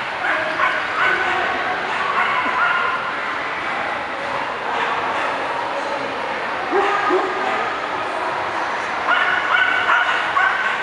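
Dogs yipping in short, high calls over steady crowd chatter, with the loudest run of yips near the end.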